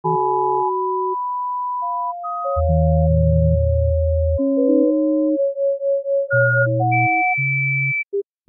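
Electronic music made mostly of pure sine-wave tones: sustained notes at different pitches start and stop in overlapping layers, with a low bass tone entering about two and a half seconds in. In the middle, one note pulses about four times a second.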